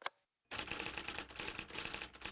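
Rapid typewriter keystrokes clattering, a sound effect for text being typed out, starting about half a second in after a short click and a moment of silence.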